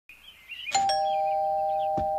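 Two-tone ding-dong doorbell chime: a higher note struck about three-quarters of a second in, then a lower note just after, both ringing on steadily.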